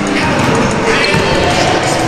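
Basketball bouncing on a hardwood gym court amid indistinct overlapping voices, all echoing in a large gymnasium.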